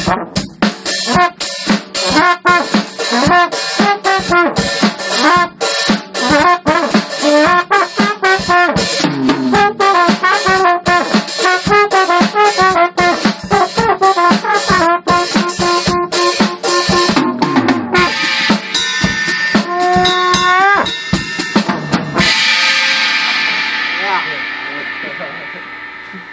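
Trombone and drum kit jamming a funk groove: busy snare, hi-hat and kick drum under a trombone melody, the trombone sliding between notes toward the end. Near the end the playing stops on a cymbal crash that rings and fades, with a short laugh over it.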